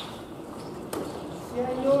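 A single sharp knock about a second in, then a person starts talking in Japanese near the end.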